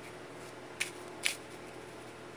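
A deck of tarot cards being shuffled overhand by hand: two short, crisp strokes of the cards about half a second apart, near the middle, over a faint steady hiss.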